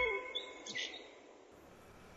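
A few faint bird chirps, two short high calls in the first second, as the background music ends. After that it is nearly silent.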